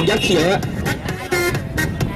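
A man's voice giving football commentary in Thai briefly at the start, then background music with held notes.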